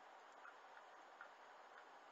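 Near silence: a faint steady hiss with a few faint, unevenly spaced ticks.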